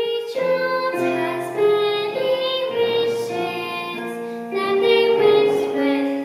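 A young girl singing a solo song with held, melodic notes, accompanied by piano chords.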